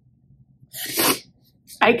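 A single sharp, noisy breath through the nose about a second in, from a woman holding back tears; her voice starts just before the end.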